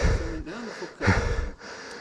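Brief, indistinct men's voices and breath noise among riders pausing between runs, with a couple of short bass-heavy bumps on the microphone, one at the start and one about a second in.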